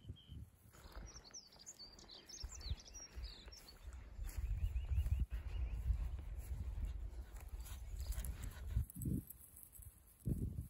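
A small bird chirps in a quick run of high notes about a second in, over a quiet outdoor background. From about four seconds in, a low rumble of wind on the microphone swells and becomes the loudest sound, with a soft thud near the end.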